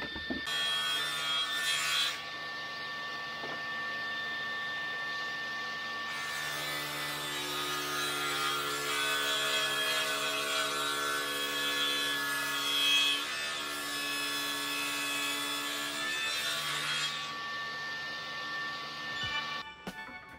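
Table saw running with a steady motor whine. From about six seconds in until near the end, its blade cuts through a wooden board.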